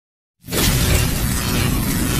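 Animated logo intro sound effect: silence, then about half a second in a sudden loud burst of dense hissing noise over a deep rumble that holds on steadily.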